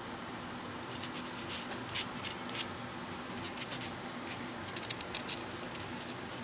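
A nail buffer block rubbing across a fingernail in short, irregular scratchy strokes, roughing up the nail surface to prepare it for an acrylic overlay.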